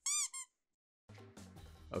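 Two quick chirping transition sound effects, each gliding up and back down in pitch, then a short silence; soft background music starts about a second in.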